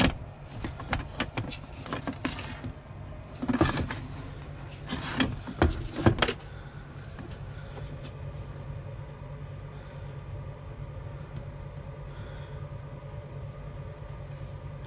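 Handling knocks and clicks as an old metal-cased 12 V battery charger is lifted off its mounting and turned over, its cables dragging. The noises come in a run of sharp knocks over the first half, loudest a few seconds in. A steady low hum carries on underneath.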